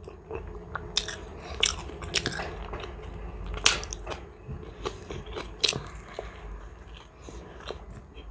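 Close-up chewing of a mouthful of ivasi herring: wet mouth smacks and soft squelching, broken by a few short sharp clicks, the loudest a little past the middle.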